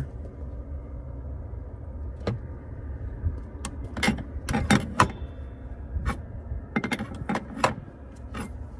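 Steel combination wrench clicking and clinking on a brass bulkhead air fitting as it is tightened into a truck's cab floor: short, sharp metallic clicks in irregular bunches, most of them around the middle and again near the end, over a steady low rumble.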